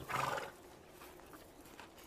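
A Yakut horse, its muzzle buried in the snow, makes one short, breathy sound about half a second long, right at the start.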